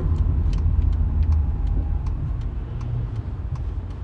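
Steady low rumble, with a few faint ticks scattered through it.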